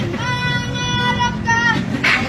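Music: a high singing voice holds one long note, which dips in pitch just before it ends, over a steady low rumble.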